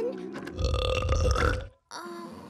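Cartoon sound effect of a character passing gas: one deep, rough blast about a second long, starting about half a second in and cutting off suddenly. It is the involuntary gas brought on by a spiked drink.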